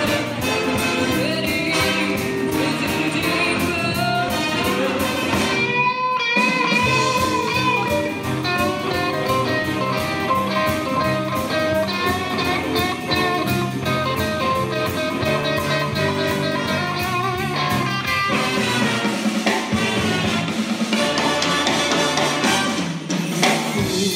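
Live big band playing, with electric guitar, drum kit and a woman singing; the bass and drums cut out briefly about six seconds in, then the band comes back in.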